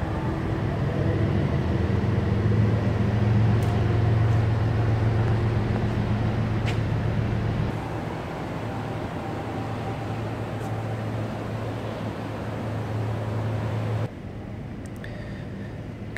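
Steady low hum and background noise of a large indoor garage, with no engine running. The hum is louder early on, eases off about halfway through and drops to a quieter level a couple of seconds before the end.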